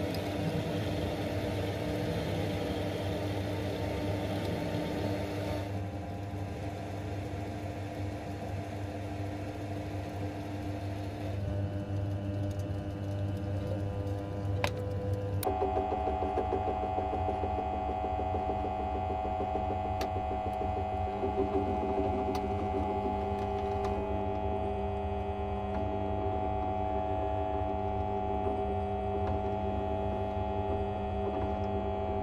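Metal lathe motor running steadily as a twist drill in the tailstock bores into an aluminium rod. About halfway through this gives way to a bench drill press motor running as it drills a small cross hole in a metal rod end clamped in a vise, with a few light clicks.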